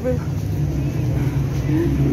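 A motor vehicle's engine running nearby with a steady low hum, growing slightly stronger toward the end, over a low rumble of street traffic.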